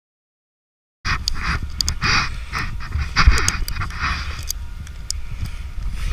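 Silent for about the first second, then a snowboard sliding and scraping over snow, in uneven surges, with a low wind rumble on the microphone and scattered small clicks.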